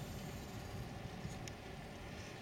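Faint steady outdoor background noise: a low, uneven rumble under a soft hiss, with a faint click about one and a half seconds in.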